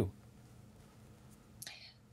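Near silence: faint room tone after a man's sentence trails off, then a short breath intake near the end, just before a woman starts to speak.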